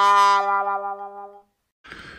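The last, long note of a "sad trombone" brass sting, wavering a little before it fades out about one and a half seconds in. It is the stock sound effect for a letdown, here the fever reading.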